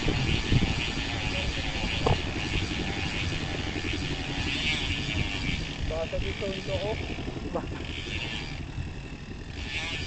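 Wind and road rumble from a bicycle rolling slowly while coasting, with a steady high-pitched band of ticking or hiss throughout. Brief voices come in about six seconds in.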